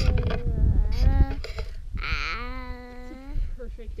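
A toddler's wordless voice close to the microphone: babbling sounds, then a drawn-out high squeal about halfway through. Wind rumbles on the microphone in the first second.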